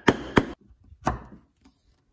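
Chisel being struck to chop box-joint waste out of an oak board: three sharp knocks in quick succession within the first second or so, then a few faint taps.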